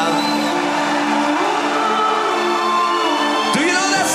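Symphonic power metal band playing live, with a chord of steady held notes and a sharp sweep shortly before the end as the next section comes in.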